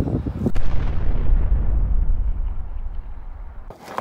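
A loud deep boom: a sharp crack about half a second in, then a low rumble whose hiss fades away over about three seconds before it cuts off abruptly near the end.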